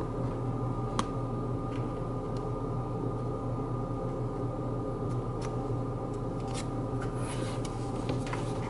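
Small laser-cut chipboard kit pieces being handled and pressed together by hand: a sharp click about a second in, then a few faint taps and rustles, over a steady low hum.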